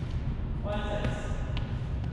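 Steady low rumble of a large gymnasium hall, with a short call from a player about three-quarters of a second in and a single light tap shortly after.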